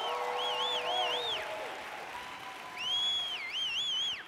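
Audience applause and cheering, with a high warbling whistle in two bursts: one in the first second and a half, another starting near three seconds in.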